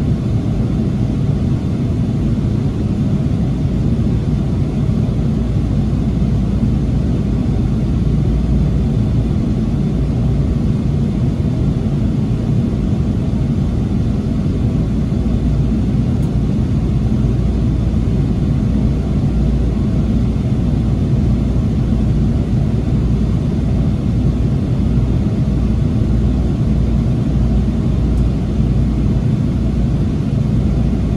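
Steady low rumble inside a Washington Metrorail Breda 2000-series railcar, with an even level throughout.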